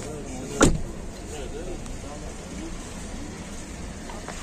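A car door being shut: a single solid thud about half a second in, over a background of crowd chatter.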